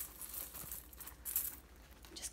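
Faint rustling and crinkling of wired ribbon and artificial pine branches being handled as a branch is twisted around the ribbon, in a few short rustles.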